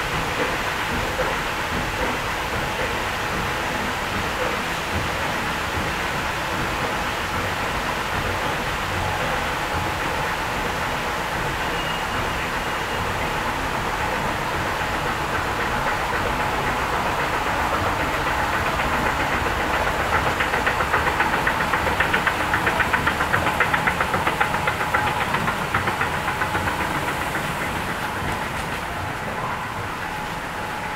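Escalator running as it carries the rider up: a steady mechanical hum and rumble. A fast, regular rattle of the moving steps grows louder about two-thirds of the way through, then the sound falls off near the end.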